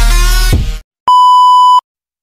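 Electronic intro music cuts off abruptly, then after a short silence one loud, steady, high electronic beep sounds for under a second and stops sharply.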